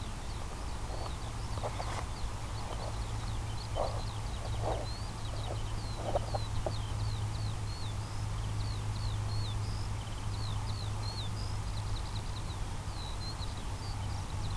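Birds chirping: a steady stream of short, quick high chirps, over a continuous low hum, with a few soft knocks in the first half.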